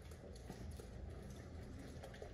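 A crowd of pigeons feeding on a ledge: many quick, irregular taps of beaks and feet on the surface, with wing flaps among them, heard through a window pane.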